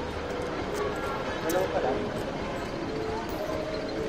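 Faint voices of people talking, over steady street background noise.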